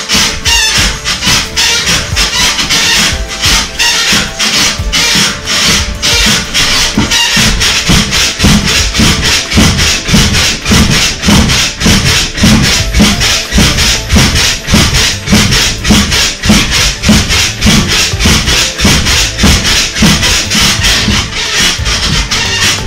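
Music with a steady beat, over the rhythmic creaking and thudding of a mini-trampoline rebounder as someone bounces on it. The bounce pulse grows stronger about eight seconds in.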